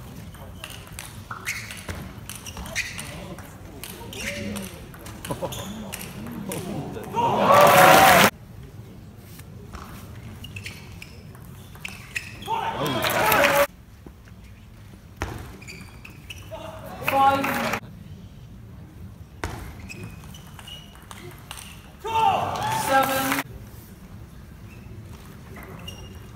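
Table tennis rallies in a large hall: a celluloid ball clicking off bats and table in quick runs of sharp hits. Four times, a point ends in a burst of shouting and cheering.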